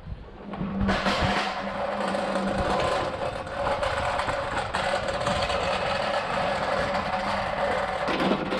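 Hand pallet truck rolling across a concrete forecourt with a loaded pallet, its wheels giving a steady noisy rumble that starts about a second in and stops suddenly near the end.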